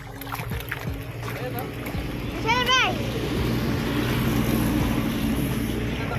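A dense crowd of feeding catfish churning and splashing at the water surface, a steady wash of splashing that gets louder about two seconds in, with a low steady hum underneath.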